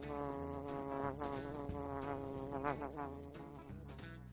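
A bee buzzing: one steady hum with a stack of overtones that wavers a little in pitch and slowly fades.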